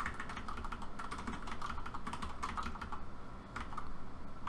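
Computer keyboard keys tapped in an irregular run of light clicks while keyframes are nudged into place.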